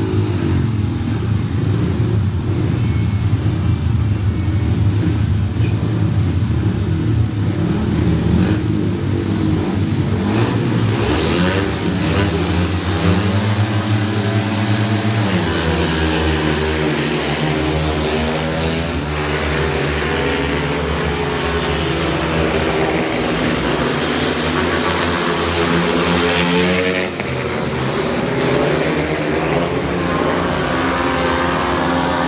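Several speedway bikes' single-cylinder 500 cc methanol engines running and being revved hard at the start tapes, their pitches wavering up and down as the riders blip the throttles. Near the end the bikes are away and racing together into the first bend.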